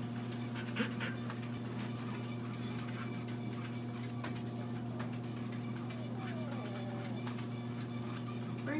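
A steady low electrical hum, with a single sharp metallic clink from a stainless steel bowl about a second in as a dog noses it. Faint gliding dog whines come later.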